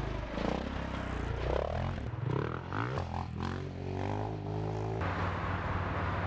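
Husqvarna FE350's single-cylinder four-stroke engine revving up and down as the dirt bike is ridden and jumped. The sound changes abruptly about three and five seconds in.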